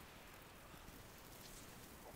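Near silence with a faint, even hiss.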